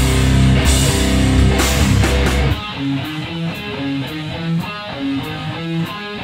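Live hardcore band playing with electric guitars, bass and drums. About halfway through, the full band drops out, leaving an electric guitar picking out a riff of separate notes with only light taps behind it.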